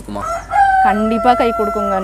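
Kadaknath rooster crowing: one long held call that starts about half a second in.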